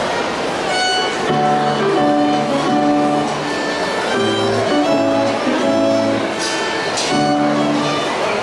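A student violinist bowing a solo exam piece: a melody of held notes that change about every half second to a second.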